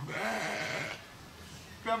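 A single animal call with a wavering pitch, lasting just under a second at the start.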